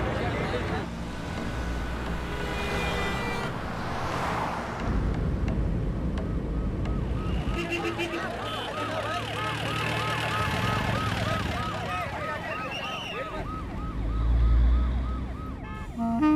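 An emergency-vehicle siren warbles rapidly up and down, about four times a second, starting about six seconds in, over the low rumble of vehicle engines. The rumble swells loudest near the end.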